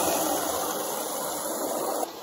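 Water from a garden hose spray nozzle pouring into a stainless steel stockpot, a steady splashing stream as the pot fills.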